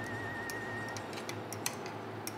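A hot pan of pasta and crisp guanciale sizzles faintly with a few sharp crackles as the egg and cheese cream for a carbonara is poured in. A faint steady high whine stops about a second in.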